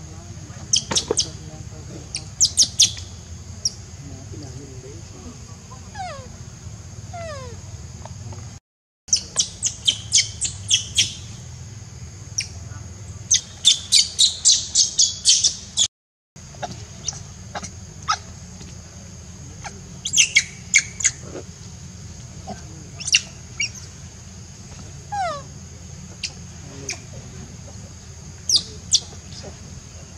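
High-pitched animal chirps and squeaks in quick strings, with a few falling whistle-like calls, over a steady low rumble.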